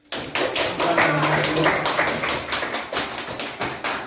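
A small audience clapping, breaking out all at once with dense, irregular claps.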